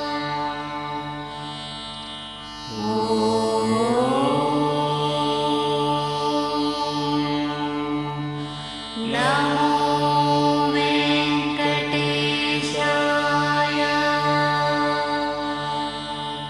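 Indian devotional music over a steady drone, with a melodic line that swoops upward in pitch about three seconds in and again around nine seconds.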